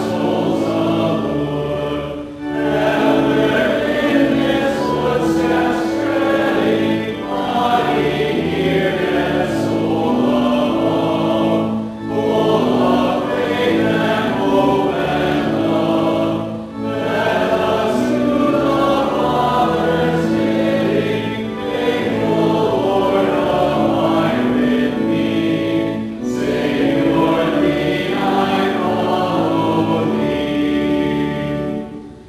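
A hymn sung by a group of voices, moving in sustained lines with short breaks between phrases.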